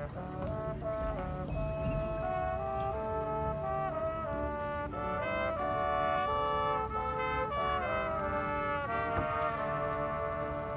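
Marching band brass section playing a melodic passage of held notes over sustained chords, the pitches stepping to new notes every second or so.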